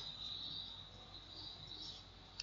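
Faint background noise: a steady high-pitched whine over a low hiss, with no clicks or other events.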